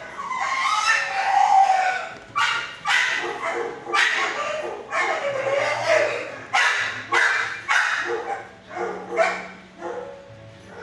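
Dogs barking in a shelter kennel, repeated barks at irregular intervals that ring off the hard walls.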